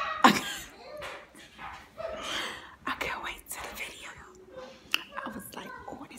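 A woman talking softly and half-whispering close to the microphone, with a sharp click about a quarter second in and another near the end.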